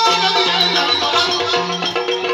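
Yakshagana accompaniment: rapid strokes on a barrel drum with small-cymbal clatter over a steady drone.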